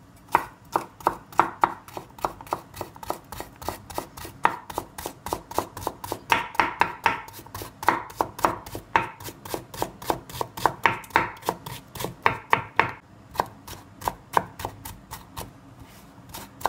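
A kitchen knife dicing carrot strips on a wooden cutting board: a steady run of quick chops, about three to four a second, each a sharp knock of the blade through the carrot onto the wood.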